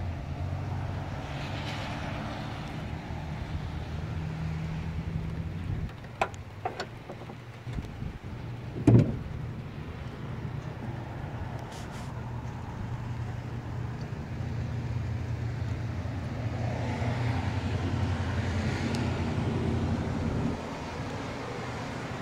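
2005 Chevrolet Silverado 2500HD's V8 engine idling steadily. A door shuts with a sharp knock right at the start, and there is another thump about nine seconds in.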